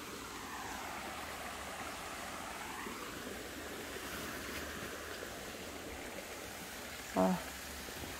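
Shallow runoff water flowing over rocks and gravel in a steady, even rush. A short 'ah' from a person comes near the end.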